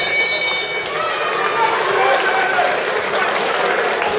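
Boxing ring bell ringing for the end of the round, its tone stopping about a second in, followed by the crowd in the hall shouting and talking.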